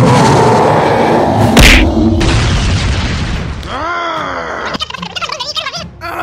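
Cartoon fight sound effects: a loud rushing noise with a heavy thud about one and a half seconds in, then a groaning cartoon voice about four seconds in and a quick warbling vocal near the end.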